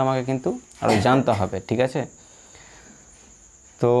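A person speaking for about the first two seconds and again near the end, with a pause between. A steady, thin, high-pitched tone runs underneath throughout.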